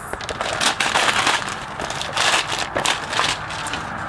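Christmas wrapping paper being torn and crumpled off a gift: a continuous run of crackling rips and crinkles.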